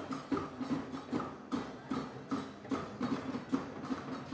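A steady percussive beat, about two to three beats a second, each beat carrying a short pitched note.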